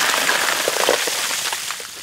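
Two large buckets of ice water poured over two seated people's heads, the water rushing and splashing onto them and the ground. The splashing is loudest at the start and slowly fades.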